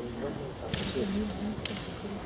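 Kendo fencers' kiai: low, drawn-out vocal shouts as the two close in, with two short sharp sounds about a second apart.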